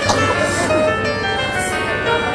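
Children's choir singing, holding notes that change pitch in steps.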